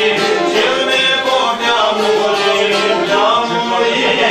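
A man singing an Albanian folk song, accompanied by a long-necked plucked lute and a clarinet.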